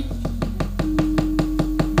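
A wayang kulit dalang's keprak and cempala knocking rapidly and evenly, about ten strikes a second. Underneath, soft gamelan accompaniment holds steady notes, with a second, higher note coming in a little under a second in.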